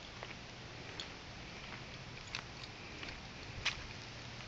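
Footsteps on sandy ground and dry leaves: a few faint, uneven crunches and clicks over a steady outdoor background, the sharpest near the end.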